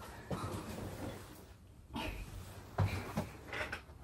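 A few soft knocks and rustles from someone moving about a small room, handling a shoulder bag and clothes, with a quiet moment between.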